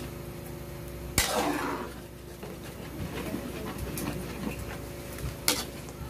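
Metal ladle stirring thick simmering blood stew in an aluminium wok, with wet scraping and slopping, over a steady low hum. The ladle knocks sharply on the pan about a second in, the loudest sound, and again near the end.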